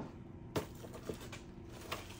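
A few faint, sharp clicks and light rustles as a live feeder rat is put into a plastic snake tub of loose chunk bedding.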